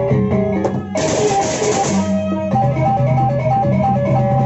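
Lombok gendang beleq gamelan ensemble playing: a quick interlocking melody on small kettle gongs over a low, steady drum pulse. About a second in, a loud burst of clashing hand cymbals lasts about a second.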